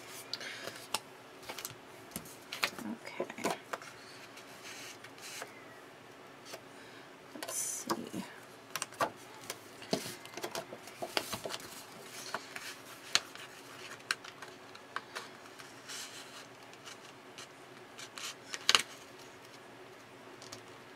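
Sheets of patterned paper and black cardstock being handled and pressed together by hand: scattered rustles, light taps and clicks, with one sharp click near the end.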